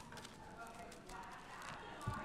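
Faint scattered clicks and light handling noise, with faint murmuring voices underneath.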